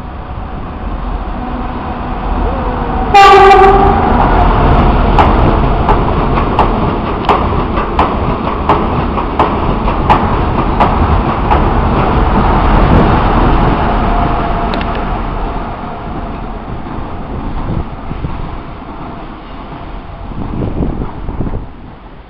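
A Renfe passenger train sounds one short horn blast about three seconds in. It then rolls past with a rumble and regular clicks of its wheels over the rail joints, fading away over the last several seconds.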